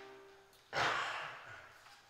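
A piano chord dies away, then a little under a second in comes one sharp breath close to the microphone, fading over about half a second.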